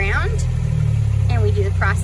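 Utility vehicle's engine idling with a steady low hum, with a slight shift in its note about a third of the way in.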